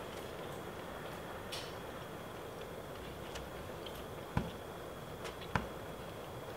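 Hands handling a sheet of kraft paper and a stamp on a cutting mat, over a steady hiss: a few light ticks, then two soft knocks about a second apart in the second half.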